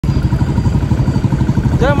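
Motorcycle engine running under way, a steady, rapid low throb. A man starts speaking near the end.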